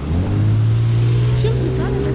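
A car passing close by, its engine a loud, steady, low hum that cuts in suddenly.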